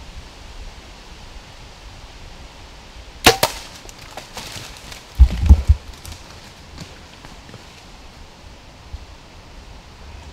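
A bow shot at a deer at close range: two sharp cracks a fraction of a second apart. About two seconds later come a few heavy low thuds, which are the loudest sounds.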